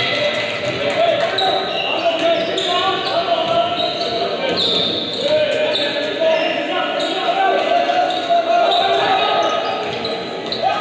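Basketball game in a large echoing gym: the ball being dribbled on the hardwood court, sneakers squeaking, and players and spectators calling out throughout.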